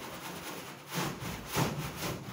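A short bristle hand broom scrubbing a metal door in rough, scratchy strokes, with two louder strokes about a second and a second and a half in.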